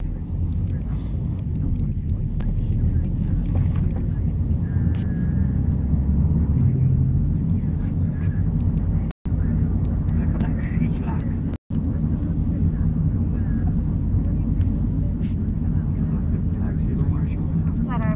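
Inside a moving car: steady low rumble of road and engine noise, with a few short clicks. The sound cuts out twice, very briefly, in the second half.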